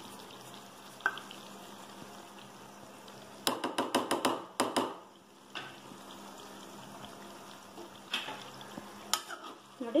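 Frying in a steel kadai: a low, steady sizzle, with a run of sharp clicks and crackles from about three and a half to five seconds in as spice powders go into the pan.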